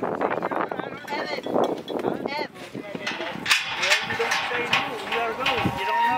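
Indistinct voices of people talking, with wavering voiced calls in the second half.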